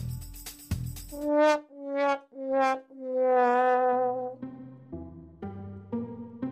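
Comic "sad trombone" brass sting: four notes stepping downward, the last one held about a second with a wobble. A few clicks come before it, and a plucked string and bass music cue starts near the end.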